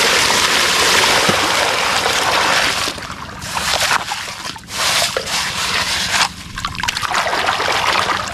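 Shallow muddy water splashed and sloshed by hand over plastic toy trucks to wash off sand: a steady rush of splashing for about the first three seconds, then broken, irregular splashes and swishes.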